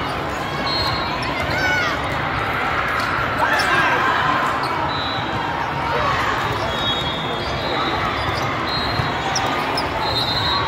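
Busy volleyball tournament hall during a rally: many overlapping, indistinct voices of players and spectators, with ball contacts and short sneaker squeaks on the court floor.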